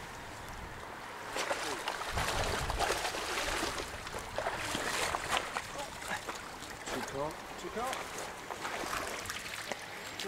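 Shallow pond water splashing and sloshing as a seine net is hauled in and fish are scooped out with landing nets, with many sharp splashes over a steady wash of water; it grows louder about a second and a half in.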